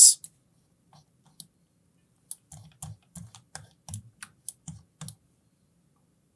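Light, irregular clicking of a computer mouse and keyboard at a desk. There are a few single clicks early on, then a quick run of about a dozen clicks between two and five seconds in.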